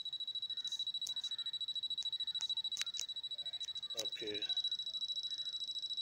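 A steady, thin, high-pitched electronic whine with a few faint clicks scattered through it.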